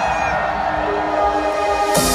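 Trance music played loud through a festival sound system, in a breakdown of held synth chords without the full driving beat.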